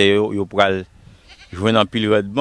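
A man's voice speaking, with a brief pause about a second in.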